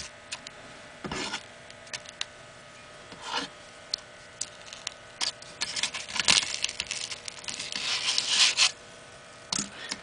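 Packed snow crackling and scraping against a metal sheet as a snowball is held in a lighter flame and pressed down, with scattered sharp clicks and a denser stretch of crackling about halfway through.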